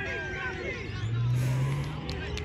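Voices and crowd chatter, then a low steady hum that rises slightly in pitch through the second half, like a motor vehicle engine.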